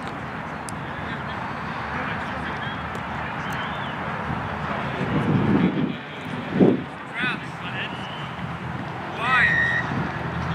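Steady outdoor background hubbub with indistinct shouted calls from players on the rugby pitch, loudest about five to seven seconds in and again just before the end.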